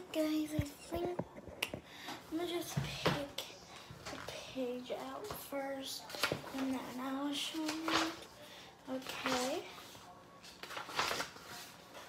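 A high voice humming a tune without words, in held notes that step up and down. A few sharp clicks and taps run through it, the loudest about three seconds in.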